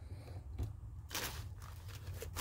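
Faint handling noise of a hand working a small screw out of the converter's plastic faceplate: a soft click about half a second in and a short scrape just after a second, over a low hum.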